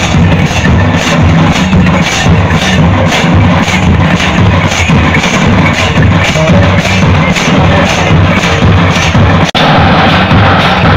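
Loud Santali lagne dance music driven by drums: an even beat of about three strokes a second over a steady low throb. The sound cuts out for an instant near the end.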